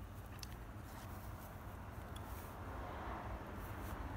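Faint outdoor background: a steady low rumble, with a few light ticks about half a second in and a slightly louder hiss near the end.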